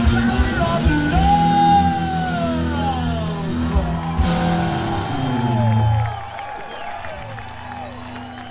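Live rock band with electric guitars and a wailing, gliding vocal. About six seconds in, the band drops back and it goes quieter, leaving a held note and whoops.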